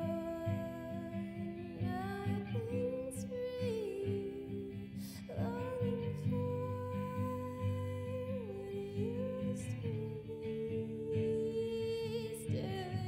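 A woman's voice holding long wordless notes that step down in pitch now and then, over steadily strummed guitar.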